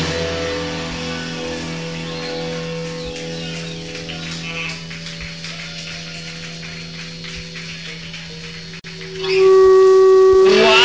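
Amplified electric guitar chord left ringing after the band stops playing, fading slowly over several seconds at the end of a rock song. Near the end, after a brief dropout, a much louder sustained guitar note comes in.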